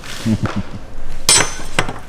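A large metal spatula clanks against a wooden workbench as it is set down: two sharp metallic strikes about half a second apart, the first with a short ring.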